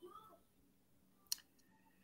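Near silence of a video call, broken by a single short sharp click a little past halfway.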